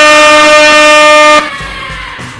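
Compressed-gas air horn blaring one loud, steady note that cuts off suddenly about one and a half seconds in.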